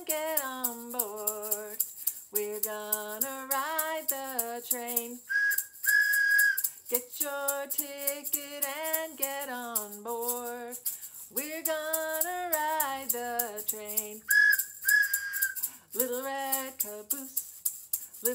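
A woman singing a children's song while shaking an egg shaker in a steady rhythm. A train whistle is blown twice, each time a short toot and then a longer one.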